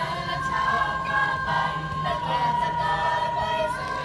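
Mixed choir of teenage girls and boys singing together, holding long notes.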